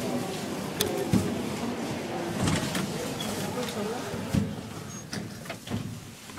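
Indistinct voices of people talking, with a few short sharp clicks.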